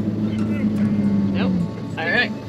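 Toyota Tacoma's engine held at steady revs under throttle as the truck pushes through soft sand, easing off about a second and a half in.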